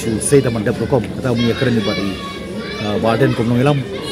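Speech only: a man talking steadily at close range.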